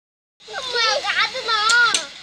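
Two young boys laughing and squealing with high-pitched voices, starting about half a second in, with a couple of short sharp clicks near the end.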